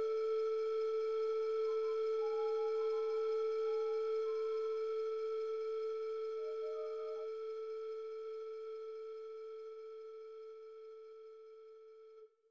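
Background film score: a single long held electronic note that fades slowly away, with a few faint higher notes over it in the first half.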